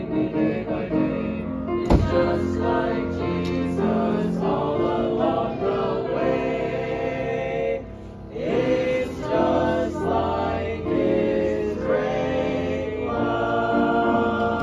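A small church choir singing a hymn in parts, with a short breath between phrases about eight seconds in. A single thump about two seconds in.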